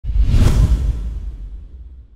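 Logo-intro whoosh sound effect: a loud swish with a deep rumble underneath, peaking about half a second in and then fading away.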